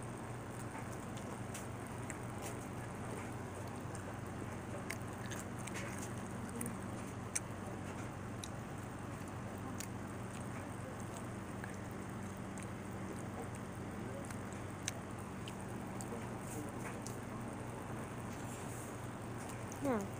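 A steady low hum with faint, scattered clicks and taps; one sharper click comes about seven seconds in.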